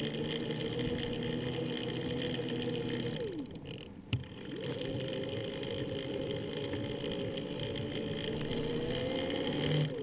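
Electric assist motor on a recumbent trike whining under power. The whine winds up in pitch, holds, then winds down and stops about three seconds in; it starts again a second later and climbs slowly as the trike speeds up, winding down near the end.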